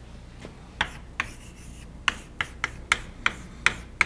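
Chalk writing on a blackboard: a string of sharp taps and short scratches as the chalk strikes and drags across the board, starting about a second in.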